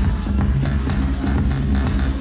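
Electronic dance music playing loudly over a club sound system, with a heavy, steady bass beat.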